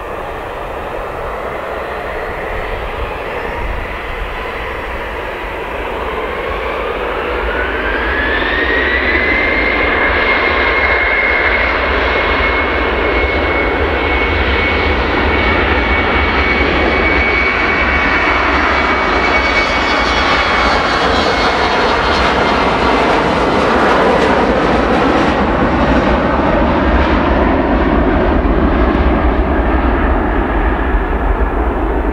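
Embraer ERJ-190's twin GE CF34 turbofans spooling up to takeoff power. A whine rises in pitch about six seconds in and then holds steady, while the engine roar grows louder as the jet accelerates down the runway. Near the end the whine fades into a broader, louder rush.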